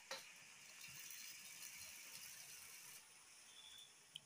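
Faint trickle of water poured from an aluminium kettle into a steel bowl of rice and lentils, a light hiss that stops about three seconds in.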